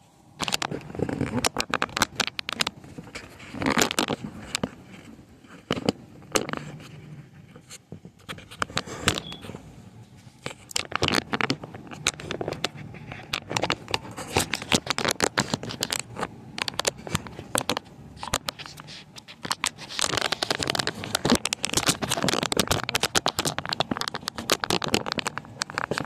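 Dense, irregular scratching and crackling from a phone being handled, its microphone rubbed. The noise starts abruptly and comes in louder clusters.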